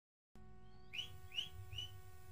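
A faint steady hum, then three short, rising bird-like chirps about 0.4 s apart, each a quick whistle-like upward sweep.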